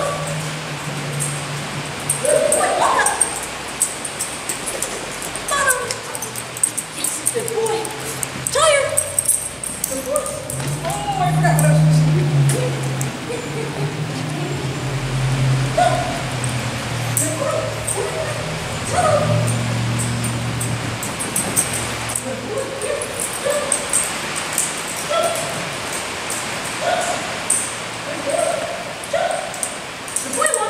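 Dog barking and yipping repeatedly in short calls, roughly one a second, over a steady low hum.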